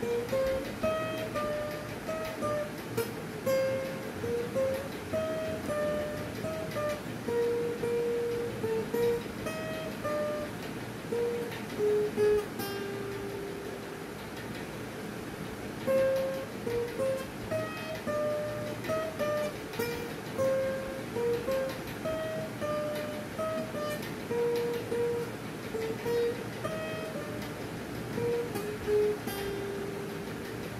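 Acoustic guitar playing a melody one plucked note at a time. The phrase ends on a held low note about halfway through and is then played again from the start, ending the same way.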